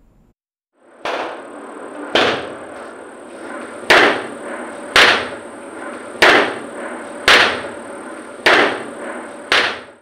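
Eight sharp blows struck about once a second, each dying away quickly, over steady room noise and a thin high whine from a phone recording.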